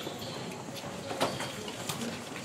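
A cloth cover rustling and scraping as it is pulled off a wall plaque, with two brief sharp sounds, one about a second in and one near the end, over a low background of people standing around.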